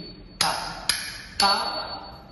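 Nattuvangam cymbals struck three times about half a second apart, each stroke ringing on. A short rhythm syllable is called with each beat.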